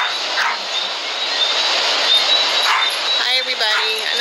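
Ocean surf washing in a steady, loud hiss. Two brief vocal sounds cut through it, and a voice begins near the end.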